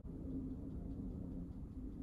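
Quiet room tone: a faint, steady low hum with no distinct events.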